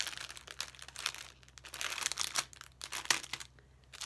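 Clear plastic cellophane bag crinkling as hands press and handle it, irregular crackles with a sharp one about three seconds in, then a lull near the end.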